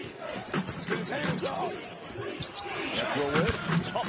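A basketball being dribbled on a hardwood court during live play, sharp repeated bounces, with voices in the arena over it.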